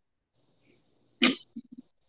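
Dead silence on the call line for about a second, then a single short vocal noise from a man, followed by a few faint low pulses.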